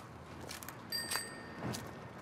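A bicycle bell rings once, about a second in, its bright tone fading within half a second, over low street noise.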